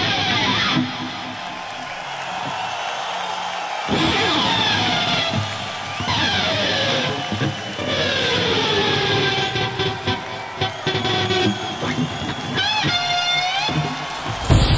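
Electric guitar played through effects, its notes sliding down in pitch over and over, with a few quick warbling dips in pitch near the end.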